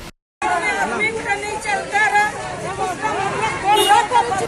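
Crowd of marching protesters, many voices talking and calling out at once, mostly women's. It opens with a short gap of silence at the cut into the street sound.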